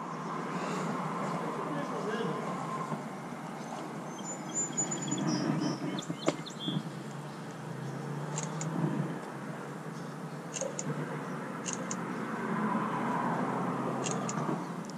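Quiet outdoor background with a low, steady hiss, handling noise, and a few short sharp clicks between about six and eleven seconds in.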